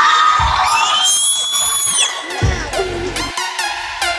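Electronic dance music. A rising sweep climbs and holds, then cuts off about two seconds in, and a heavy bass beat starts half a second later.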